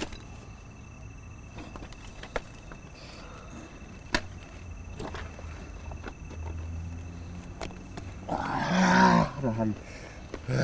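A man's loud wordless cry, lasting about a second and a half near the end, from a man being held and brought out of a trance. Before it there is only a low rumble and a few scattered sharp clicks.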